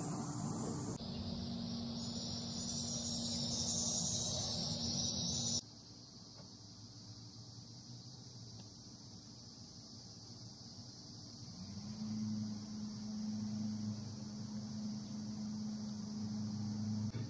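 Steady high shrill of an outdoor insect chorus, loud for the first few seconds and dropping suddenly to a fainter level about five and a half seconds in, over a low steady hum that grows louder toward the end.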